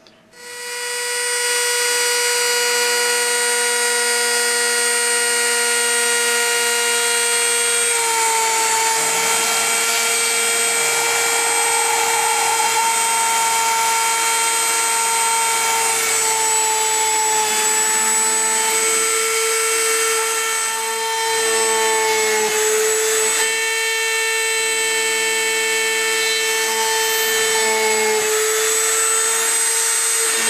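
Dremel rotary tool in a drill press stand starting up and running at a steady high whine while a very small bit drills holes through copper-clad circuit board. A few times the pitch sags slightly as the bit cuts into the board.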